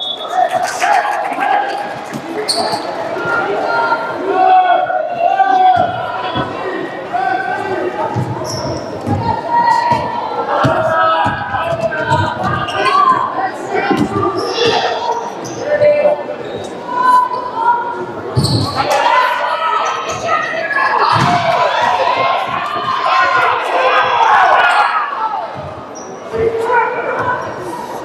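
Basketballs bouncing on a hardwood gym floor as players dribble and run the court, with shouting voices of players and spectators, all echoing in a large gymnasium.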